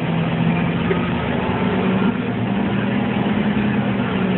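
Steady rumble and low hum of a public transit vehicle heard from inside the passenger cabin, running evenly throughout.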